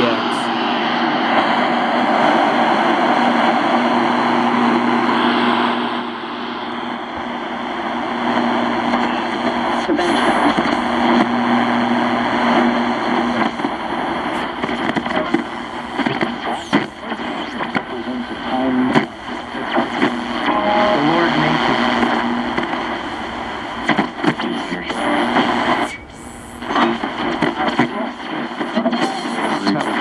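Sony SRF-59 Walkman pocket radio playing through a small speaker while tuned on FM. There is a dense hiss of static at first, then weaker, crackling reception with faint, broken voices from a station.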